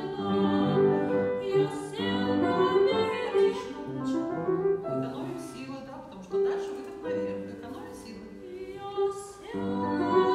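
A 12-year-old boy singing a classical song in a treble voice, accompanied on a grand piano. The singing breaks off for a few seconds in the middle over softer piano, then comes back near the end.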